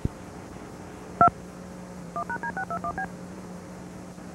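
DTMF tone sequence recorded on a Walt Disney Home Video VHS tape's audio track: a click, then one two-tone beep (the digit 2) about a second in, then a quick run of seven short beeps (1#D621B). Steady tape hiss and a low hum run underneath.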